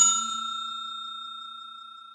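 A bell chime sound effect, struck at the very start and ringing on at a steady pitch as it slowly fades away.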